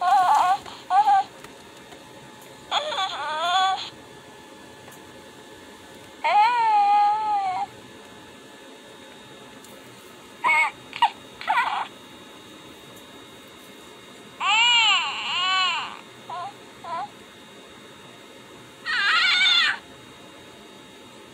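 Hasbro Grogu (The Child) electronic talking plush playing its recorded baby coos and squeaks when squeezed: about seven short calls, each about a second long and bending up and down in pitch, with pauses of a few seconds between.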